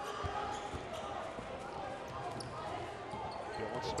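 Basketball bouncing on a hardwood gym floor during live play, with a low murmur of crowd voices echoing in the gym and a few short knocks.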